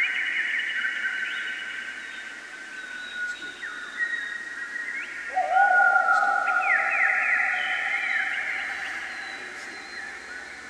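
Improvised electronic music: sustained high synthesizer tones that slide in pitch. About five seconds in a lower tone glides in, bringing the loudest part, with quick upward chirps around seven seconds before the sound fades.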